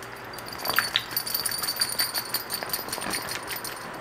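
A plastic bag of cleaning solution crinkling, with water dripping and splashing, as it is lifted out of an ultrasonic cleaner's water bath, over a steady high-pitched whine.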